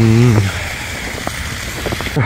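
A man's voice holds a short drawn-out "a", then a steady rushing noise with no clear source takes over.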